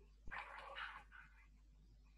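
Near silence with a faint click about a quarter second in, followed by a brief faint sound lasting under a second, then low room tone.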